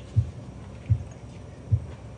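Soft, short low thumps from the band on stage, about one every three-quarters of a second and slowing slightly, with little else sounding.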